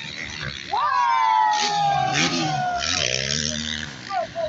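Motocross bike engine revving up sharply about a second in, then its pitch falling slowly over the next two seconds as it runs down.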